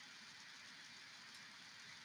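Near silence: faint steady background hiss.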